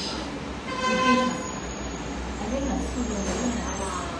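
A vehicle horn honks once, a single steady note lasting about half a second, about a second in.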